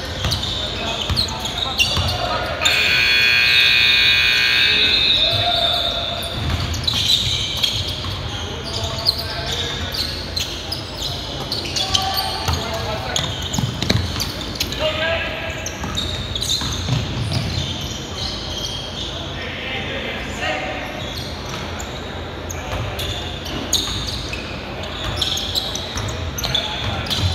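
Basketball dribbling and bouncing on a hardwood gym floor amid players' voices, echoing in a large gym. A few seconds in, a loud sustained buzzing tone sounds for about three seconds.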